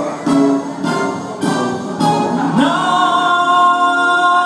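A man sings live over jazz backing music. The accompaniment plays short rhythmic stabs, and a little past halfway the voice rises into one long held note.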